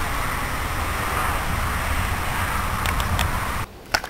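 Storm wind gusting through the trees, with wind buffeting the microphone. It cuts off sharply shortly before the end, followed by a click.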